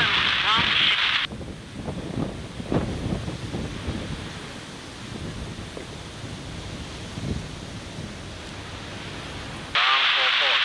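A thin, tinny air traffic control radio voice cuts off about a second in, leaving a low outdoor rumble with wind noise. The radio comes back suddenly just before the end.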